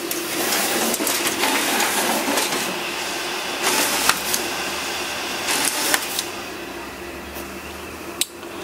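Océ photocopier's automatic document feeder and scanner running, pulling the originals through: a steady mechanical whirring with a few clicks about four and six seconds in, then a quieter running sound.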